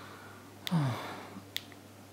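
Two short clicks of a button phone's navigation key being pressed, about a second apart, with a brief falling vocal murmur just after the first click.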